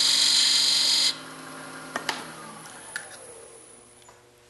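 Parting tool cutting into lignum vitae spinning on a wood lathe, a loud high-pitched scraping for about a second. Then, after a click about two seconds in, the lathe motor's hum falls in pitch and fades as the lathe is switched off and spins down.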